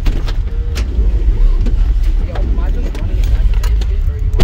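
Low rumble of a passenger van heard from inside its cabin, with a few sharp knocks and clicks.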